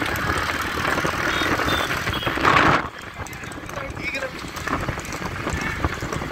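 Motorcycles running alongside horse-drawn racing carts on a highway, mixed with men's voices shouting. A loud rush of noise comes about two and a half seconds in, then the mix drops suddenly quieter.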